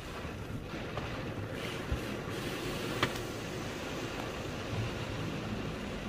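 Automatic car wash heard from inside the car: a steady rushing of water spray and rotating brushes against the body and windscreen, with two short sharp knocks about two and three seconds in.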